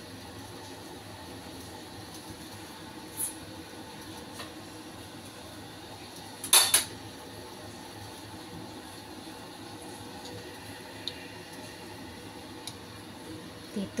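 A covered wok simmering on a gas stove, with water and minced meat cooking under the lid, gives a steady low hiss. A short, loud clatter comes about six and a half seconds in, with a few fainter clicks around it.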